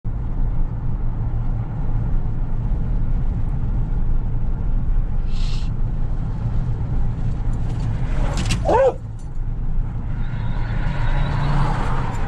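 Steady low road and engine rumble inside the cabin of a car cruising at about 33 mph. A short hiss comes about five seconds in, and a brief wavering pitched sound near nine seconds in; the noise grows a little louder near the end.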